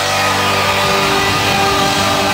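Live band playing loud rock music, led by electric guitars over a full band.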